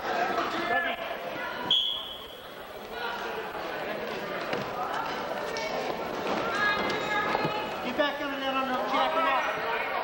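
Spectators shouting and talking in an echoing school gymnasium during a high-school wrestling bout. A short, high referee's whistle blast comes about two seconds in as the bout starts, and a few thuds follow.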